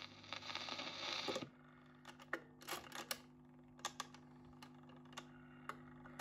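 The last faint notes of the record fade out about a second and a half in. Then a Dansette Major record player hums steadily while its stylus and autochanger mechanism give a scatter of sharp clicks as the tone arm leaves the record and swings back to its rest.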